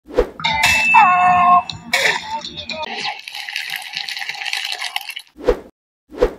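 Clinking metallic sound effects: a short knock, then ringing tones that glide down about a second in, a second knock, a couple of seconds of rattling hiss, and one sharp knock near the end.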